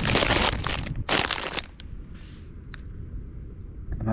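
Plastic snack packaging crinkling as it is handled, in two loud bursts over the first second and a half, then quieter with a few small clicks.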